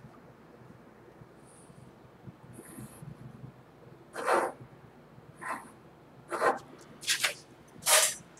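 Mechanical pencil scratching lines on drafting paper along a plastic triangle: a couple of faint scratches, then from about halfway a run of short, louder strokes about a second apart.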